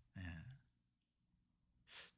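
Near silence after a man's brief spoken 'ye' (yes).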